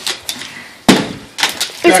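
Plastic water bottle, partly filled, flipped onto a metal cabinet top: it hits with one loud knock about a second in, followed by a few lighter knocks as it tumbles instead of landing upright.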